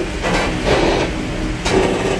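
Running noise of a passenger train heard from inside the vestibule between carriages: a steady rumble and rattle, with a sharp knock near the end.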